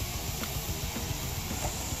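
Steady background hiss with a low rumble underneath, with no distinct events.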